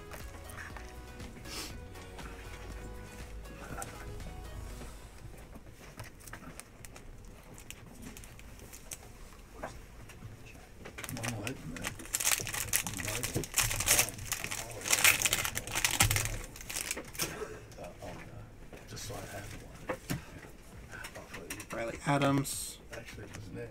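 A baseball card pack's foil wrapper crinkling and tearing as it is opened by hand, in loud crackling bursts from about eleven seconds in that last some six seconds, over quiet background music.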